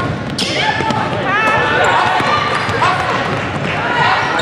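Basketball game on a hardwood court: sneakers squeak in short rising and falling chirps from about a second in, with the ball bouncing and a sharp strike about half a second in.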